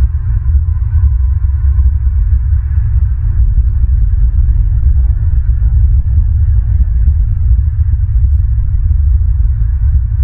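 Loud low rumble of wind buffeting an outdoor camera microphone, fluttering in strength.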